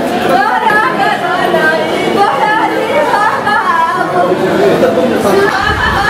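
Women wailing and lamenting in grief, voices drawn out and overlapping with crowd chatter in a large echoing hall.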